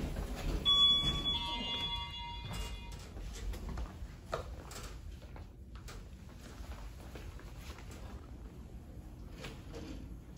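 Elevator sounds from a Montgomery KONE hydraulic elevator: a two-note electronic chime about half a second in, over a low rumble, followed by scattered knocks and footsteps as the car is left.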